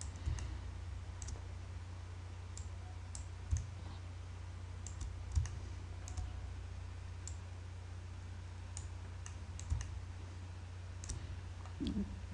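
Computer mouse clicking now and then, a dozen or so separate single clicks, over a steady low electrical hum.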